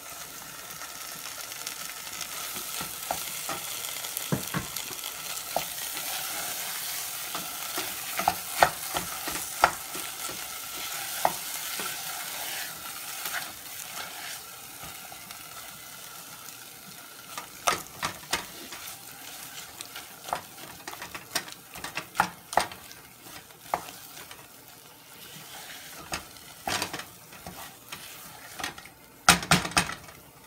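Boiled cassava sizzling as it drops into hot spiced oil in a saucepan, then being stirred and mashed with a spatula that clicks and scrapes against the pan. The sizzle is strongest in the first half and dies down, while the spatula knocks keep on and grow more frequent near the end.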